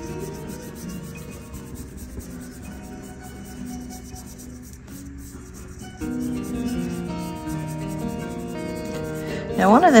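A paintbrush rubbing and scrubbing oil paint onto the painting surface, with soft background music of held notes that grows louder about six seconds in.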